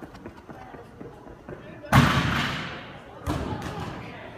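A gymnast's run-up on the vault runway, then a loud bang about two seconds in that rings on and fades over about a second: feet striking the vault springboard. A second, weaker thud follows a little over a second later.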